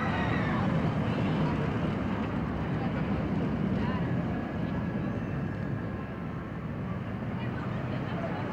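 Suspended steel roller coaster train rumbling along its track, loudest in the first half and fading after about four and a half seconds.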